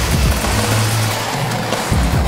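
A live band plays an electronic rock song with a heavy, driving beat. About half a second in, the drums break off and leave a held low bass note, and the beat comes back in near the end.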